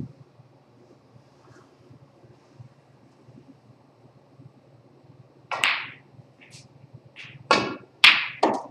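A snooker cue strikes the cue ball sharply near the end, sending it into the pack of reds. Earlier, about five and a half seconds in, there is a short loud hiss, the loudest sound here, over a low steady room hum.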